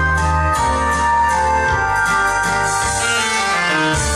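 Waltz music with long held chords over sustained bass notes.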